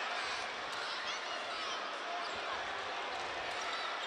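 A basketball being dribbled on a hardwood court, heard over the steady noise of the crowd in the arena.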